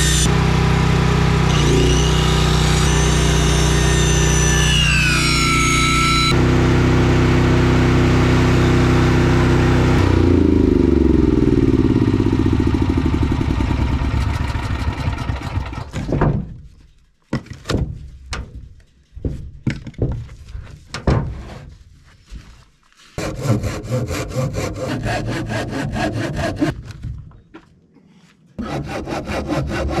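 Corded circular saw cutting through thick rough-cut lumber, its pitch sagging under load, then running free and spinning down about ten seconds in. After a short pause come scattered, then steady rhythmic strokes of hand sawing in the wood, finishing the stair-notch corners that the round blade can't reach.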